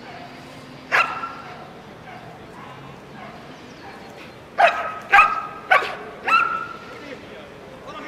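A dog barking: one bark about a second in, then four more in a quick run a little over half a second apart.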